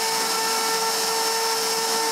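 CNC router spindle running steadily while a V-bit engraves a wooden board: a constant high whine over a hiss of cutting.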